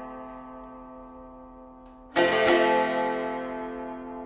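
Sharkija, a long-necked Balkan lute, played solo. A chord rings and fades, then about two seconds in it is struck again with two quick strokes, and the new chord rings out and slowly dies away.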